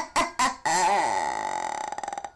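A woman's spooky laugh: a few short 'ha' bursts, then one long drawn-out sound that falls in pitch and turns rough and creaky near the end.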